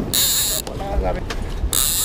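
Conventional lever-drag fishing reel buzzing as a hooked fish pulls line off against the drag, in two spurts: one at the start and a shorter one near the end.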